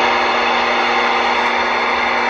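CB radio receiver static: a steady hiss with faint steady tones under it. It starts abruptly as the talking stops.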